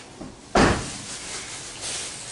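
A single sharp bang about half a second in, after a couple of light clicks, in a workshop setting.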